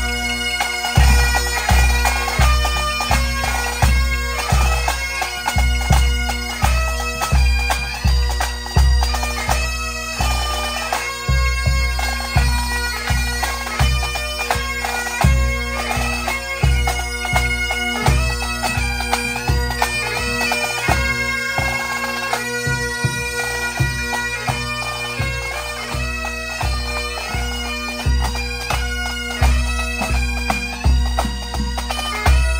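A pipe band playing: Great Highland bagpipes carry the melody over their steady drones, with a bass drum beating a regular pulse and snare drums. The bass drum drops out for a couple of seconds about twenty seconds in.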